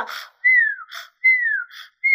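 A woman imitating a sleeper's snore with her mouth: a hissing breath followed by a falling whistle, twice, in the cartoon style of snoring.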